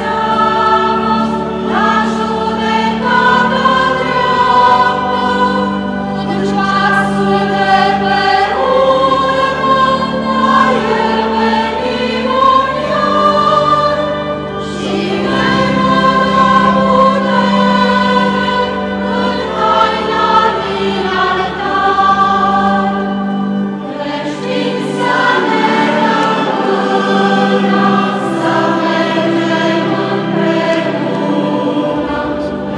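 Church choir singing a hymn during Mass, many voices over steady, sustained low notes.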